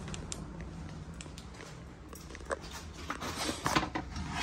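Footsteps and light clicks on a tile floor, then a burst of rustling and clicking near the end as a window shade is pushed aside, over a steady low hum.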